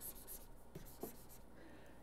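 Faint stylus strokes and light taps on a tablet screen as text is highlighted, over a steady low hum.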